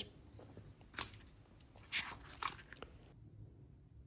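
Faint paper rustles as the pages of a printed journal are handled and a page is turned, a few short crisp crackles in the middle.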